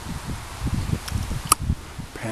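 Wind buffeting the microphone in uneven low gusts, with one sharp click about a second and a half in.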